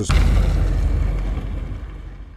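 Low, even rumbling noise with no distinct tones, loudest at the start and fading out steadily over about two seconds.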